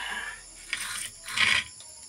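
Metal ladle scraping and clinking against a metal pot as it stirs coconut-milk chicken stew, in three short bursts.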